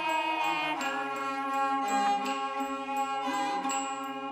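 Huayin laoqiang, a traditional Shaanxi folk music: long held pitched notes over the ensemble, with a few sharp struck attacks.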